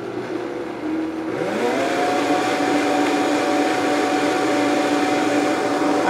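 Countertop blender running, blending masa harina into chicken broth. The motor hums at a lower speed, rises in pitch about one and a half seconds in, then holds steady at the higher speed.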